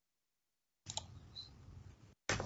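Dead silence at first, then, a little under a second in, faint room noise from a video-call microphone comes back with a couple of quiet computer-mouse clicks.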